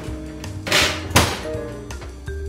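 Oven door swung shut with a single thunk about a second in, just after a brief scrape, over background music.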